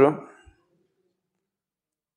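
A man's voice finishing a word, a faint low thump, then dead silence.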